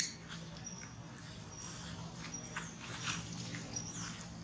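Quiet outdoor ambience: a sharp click at the start, then scattered faint rustles and clicks with short, high chirps.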